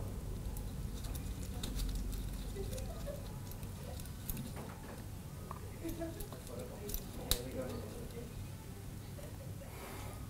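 Faint clicks and light scraping of metal forceps gripping and unscrewing the needle from a dental cartridge syringe, with a couple of sharper clicks about two-thirds of the way in, over a steady low hum.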